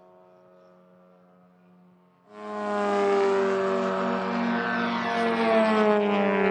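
A model aircraft's engine flying past: faint at first, then loud from about two seconds in, a droning tone whose pitch falls slowly as it passes.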